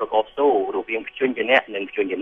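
Speech only: continuous talk in Khmer.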